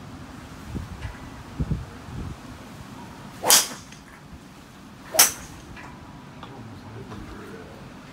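Two sharp cracks of golf clubs striking balls off driving-range mats, about a second and a half apart. A few soft low thuds come before them.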